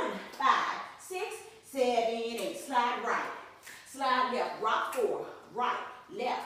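Speech only: a woman's voice calling out dance counts and step cues.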